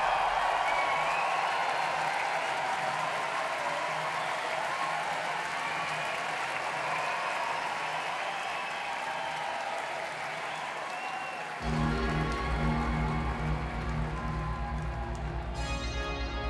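A large concert crowd applauding and cheering, with some whistling. About eleven and a half seconds in, an electronic track starts suddenly with a deep, evenly pulsing bass line.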